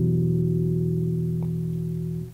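A final chord on a classical acoustic guitar ringing out and slowly fading as the song ends.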